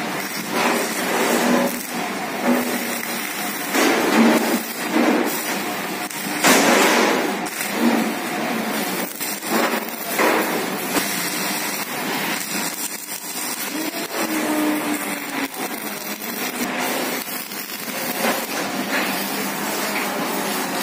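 Electric arc welding on steel plate: the arc crackles and sputters steadily, with a few sharp knocks among it.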